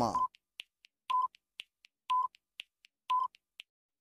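Quiz countdown timer sound effect: a short beep about once a second, with several quick, sharp clock-like ticks between the beeps.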